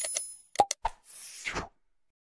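Interface sound effects from an animated subscribe-and-bell reminder: a few quick clicks, then two short pops, then a brief soft rush of noise that stops well before the end.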